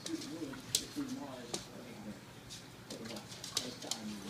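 Two dogs play-wrestling, making low, wavering play growls and grumbles, with a few sharp clicks, likely nails on the hard floor.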